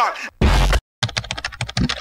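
The last hit of a hip-hop music track, which cuts off under a second in, then computer keyboard typing: a quick, uneven run of keystroke clicks.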